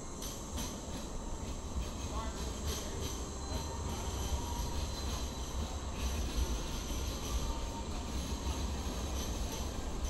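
Sydney light rail tram passing close by at low speed, a steady low rumble with faint thin whining tones from its motors and wheels.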